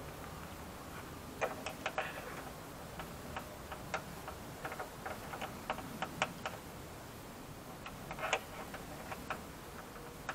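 Irregular light clicks and taps, coming in small clusters, from plastic trim parts and the rubber door seal being handled on a car door.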